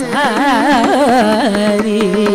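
Carnatic concert music: a woman's voice sings a phrase full of rapid wavering ornaments (gamakas), settling onto a held lower note about one and a half seconds in, over the steady drone and regular strokes of a drum accompaniment.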